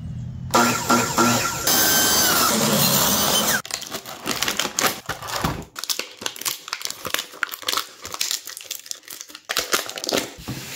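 A loud burst of noisy sound with a laugh in it fills the first three seconds or so. Then a clear plastic bag crinkles and crackles in short irregular bursts as an action figure is worked out of it by hand.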